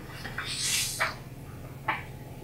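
Marker writing on a glass board: a soft scratch of strokes about half a second in, then two short squeaks, one about a second in and one near the end.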